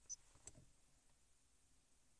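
Near silence, broken by a short high beep from a car stereo head unit's touchscreen as a menu tab is tapped, then a faint click about half a second in.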